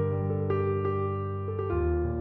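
Slow, gentle instrumental piano music: single notes struck one after another over held low bass notes, the bass shifting to a new chord near the end.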